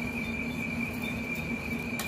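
Insects chirring in one steady, unbroken high tone, over a low, even hum.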